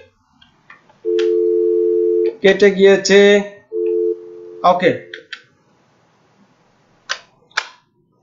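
A steady two-note telephone line tone held for about a second, then broken by a brief voice and heard again, louder at first and then quieter. Two sharp clicks come near the end.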